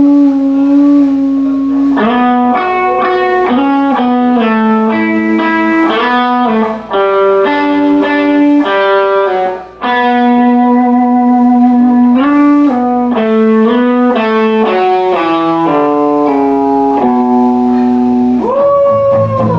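Electric guitar solo with an overdriven, effected tone: a single melody of long held notes stepping up and down, with little else playing behind it. There are two brief breaks in the line, about seven and ten seconds in.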